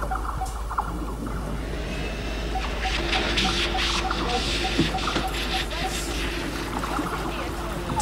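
Game-show background music with a steady ticking pulse and a held low note coming in about three seconds in, over a hiss of running water that swells in the middle.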